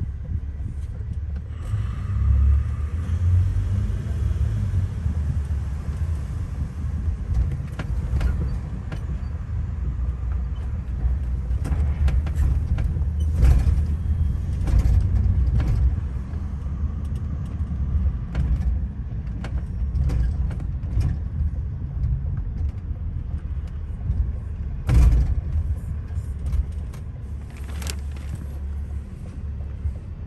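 Low road and engine rumble heard inside the cabin of a car driving through city streets, with scattered clicks and knocks, the loudest a thump about 25 seconds in.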